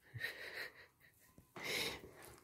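Two faint breathy exhales from a person, one near the start and one near the end, without voice.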